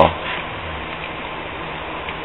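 Steady background hiss with a faint low hum, with no distinct sound event.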